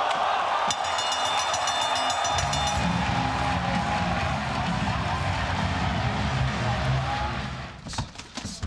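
Arena crowd cheering loudly in reaction to a knockout, a steady wall of voices. A low, pulsing music bed joins about two seconds in, and the noise drops away near the end.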